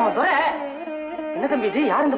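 Background film score in a Carnatic style: a plucked string instrument plays a bending, ornamented melody over held tones.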